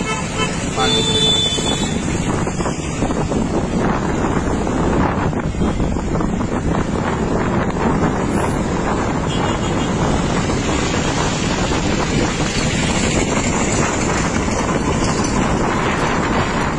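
Steady road and engine noise from a moving vehicle, with wind buffeting the microphone. A short horn toot comes about a second in.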